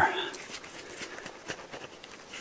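Bark being worked loose by hand from a tree trunk around a knot: a few faint, short cracks and ticks.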